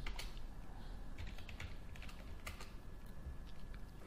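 Faint, scattered keystrokes on a computer keyboard, a handful of key presses at irregular intervals.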